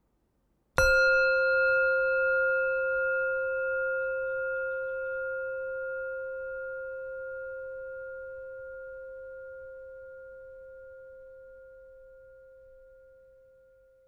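A singing bowl struck once about a second in, ringing with a low fundamental and a few higher overtones that fade slowly over about thirteen seconds.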